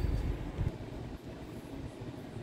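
Low, uneven rumbling with soft irregular bumps: handling noise as the camera is moved about and refocused close over the cast-iron head.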